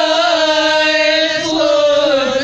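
Women singing a noha, a Shia lament recitation, holding one long, steady note.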